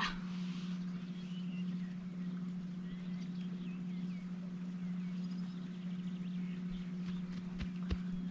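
Quiet outdoor ambience: a steady low hum with faint bird chirps scattered through it, and a couple of short soft clicks near the end.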